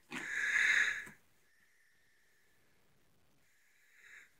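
A young calf's single breathy snort through the nose, lasting about a second, followed by near silence.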